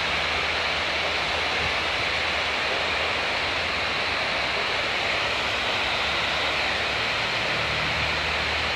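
Water pouring over a low weir into a churning pool below: a steady, unbroken rush.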